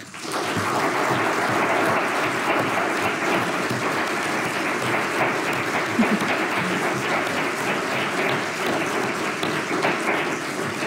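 Audience applauding, starting abruptly and holding steady.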